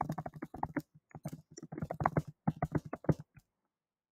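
Typing on a computer keyboard: a quick, irregular run of keystrokes that stops about three and a half seconds in.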